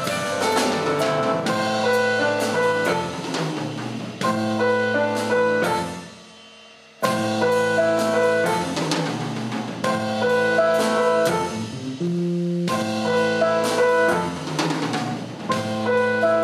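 Jazz trio playing live: keyboard chords, electric bass and drum kit. The band stops for about a second just past the middle and comes back in together.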